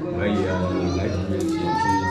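Speech: men's voices talking, with no clear non-speech sound.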